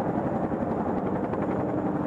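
Boeing AH-64 Apache attack helicopter flying past: the steady drone of its rotors and turbine engines, even in level throughout.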